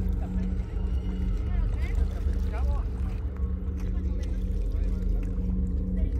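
Faint voices of several people talking over a steady, loud low rumble that runs without a break.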